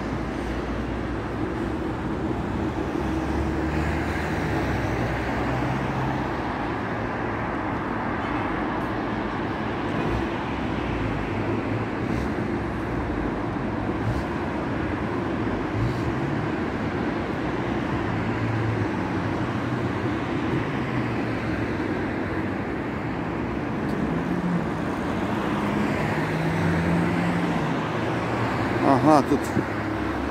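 Steady road traffic on a wide multi-lane city avenue: cars passing continuously with tyre noise and engine hum that swells and fades as vehicles go by. The passes are a little louder about four seconds in and again near the end.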